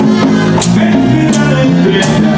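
Live Latin band playing cumbia at full volume: bass line, hand percussion and scraper, with sharp percussion strikes about every two-thirds of a second.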